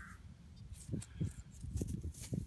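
Soft handling noise as a thumb rubs soil off a worn coin held in the hand, with a few irregular low knocks in the second half.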